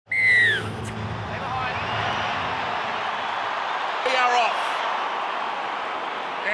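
Stadium crowd at a rugby league match: a steady din of many voices. It opens with a short, high whistle that falls in pitch, and a voice is faintly heard about four seconds in.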